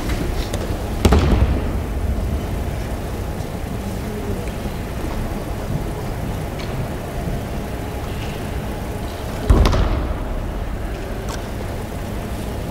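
Two heavy thuds of a body slamming onto tatami mats in aikido breakfalls, one about a second in and one near the end, over a steady low background rumble.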